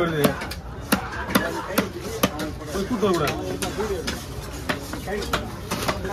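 Large fish-cutting knife chopping yellowfin tuna into chunks on a wooden chopping block: a dozen or so sharp, irregular knocks, with people talking in the background.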